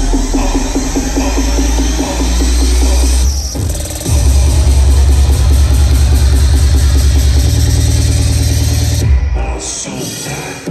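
Heavy bass electronic dance music from a DJ set played loud over a club PA and picked up by a phone microphone. A rising sweep builds for about three seconds, the music drops out briefly, then a dense, fast-pulsing bass section hits about four seconds in and breaks off near the end.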